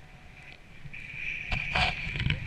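Wind rushing over an action-camera microphone in paraglider flight, with a steady high-pitched whine that swells after about a second. Loud gusts of wind buffeting come near the end.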